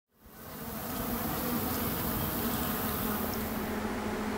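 Honeybees buzzing: a steady hum that fades in over the first second and holds.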